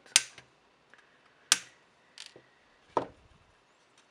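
Small side cutters snipping excess component leads off the underside of a soldered circuit board: three sharp clicks about a second and a half apart, with a fainter click between the second and third.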